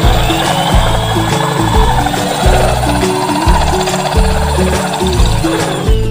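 Background music over an electric drill's diamond core bit grinding into a water-cooled glazed ceramic bowl. The grinding stops near the end.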